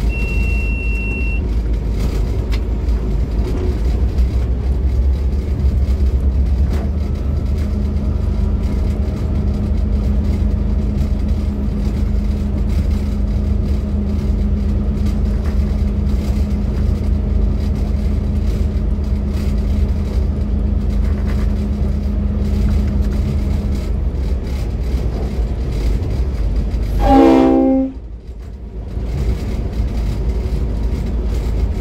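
V/Line N class diesel-electric locomotive running at speed, its engine and the wheels on the rails making a steady rumble with a held hum through the middle. A short high beep sounds at the start. Near the end the locomotive horn gives one brief blast, the loudest sound, after which the noise drops away for a moment.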